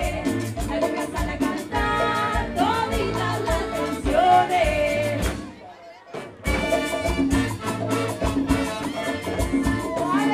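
Live cumbia band with a female lead singer, a steady bass beat under the sung melody. Just past halfway the music drops out for about a second, then comes back.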